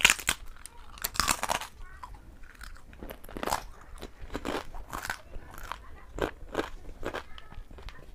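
A person biting into a thin, crisp JOLO chili chip with sharp crunches at the start and again about a second in, then chewing it with smaller crunches that fade.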